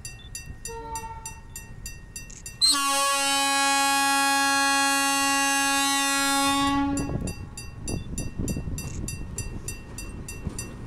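ALCo diesel locomotive's air horn sounding one long, steady blast of about four seconds, starting near three seconds in, over the rapid steady ringing of a level-crossing warning bell. After the horn, the locomotive's diesel engine rumbles as it approaches.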